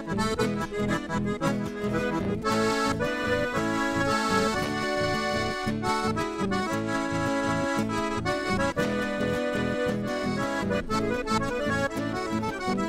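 Red Hohner button accordion playing a lively chamamé melody in an instrumental passage, with acoustic guitar accompaniment and a steady rhythmic bass pulse underneath.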